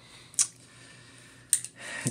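Two short, sharp clicks, about a second apart, as the SIG SG 553's lower receiver with its folding stock is handled.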